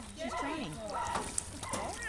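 Indistinct voices talking, with light water sloshing around a swimming dog.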